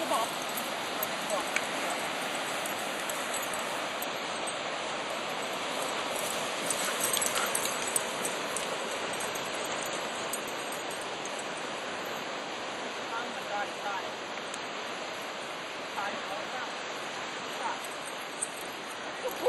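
Steady rushing noise of ocean surf, with a few faint brief sounds over it.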